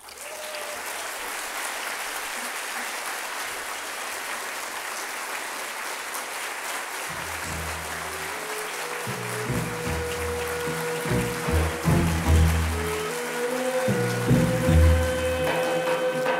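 Audience applauding steadily. About seven seconds in, music with a deep bass line and held notes comes in over the applause and grows louder.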